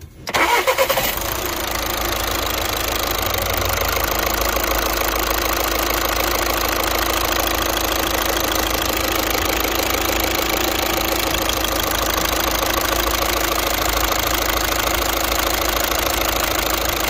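Volkswagen Jetta diesel engine cranking briefly and catching at once, then idling steadily. The injectors are leaking diesel and combustion gas at their bodies.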